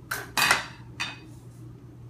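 Metal cookware clattering as a pot of rice is handled on the stove: three sharp knocks, the loudest about half a second in.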